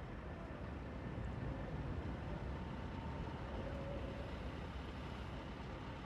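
Steady low rumble of parked diesel semi trucks idling, running evenly with a faint thin tone above it.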